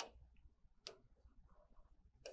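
Near silence broken by two faint, sharp clicks about a second apart: a pen tapping on a touchscreen board.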